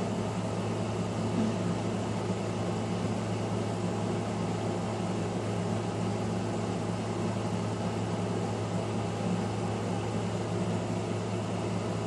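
Steady low hum with a faint hiss and no distinct events: background room noise.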